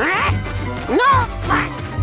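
A cartoon creature's squeaky, wordless vocal noises, three short calls that glide up in pitch and fall back, over background music with a steady beat.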